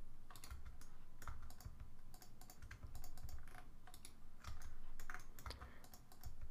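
Computer keyboard keys being pressed in short, irregular clicks, fairly faint, as shortcuts are tapped while editing in 3D software.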